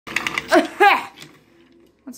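A small toy motor running briefly with rapid clicking, followed by a voice giving a loud two-syllable exclamation that rises and falls in pitch.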